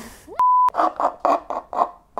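A short censor-style bleep, a steady pure tone lasting about a quarter second, followed by a quick run of about five bursts of a girl's laughter, about four a second.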